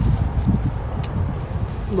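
Wind buffeting the microphone: an uneven low rumble, with a few faint clicks.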